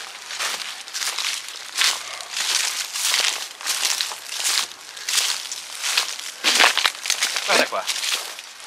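Footsteps crunching and crackling through dry fallen leaves, twigs and litter, in a steady walking rhythm of short bursts about every half second.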